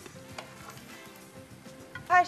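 Eggplant pieces sizzling as they fry in hot oil in a pan, with a few faint clicks of tongs against the pan and plate.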